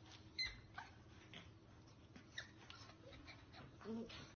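A corgi puppy pawing and climbing at the bars of a wire playpen: faint clicks and knocks of paws on the metal, the sharpest about half a second in. Near the end comes a brief low whimper.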